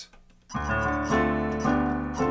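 Keyboard playing alternating F major and G major triads over a held D minor bass, the polychord sound of alternating triads on the third and fourth degrees of D minor. The chords start about half a second in and change roughly twice a second.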